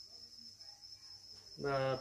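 A steady high-pitched tone that holds one pitch throughout, with a man's voice starting about one and a half seconds in.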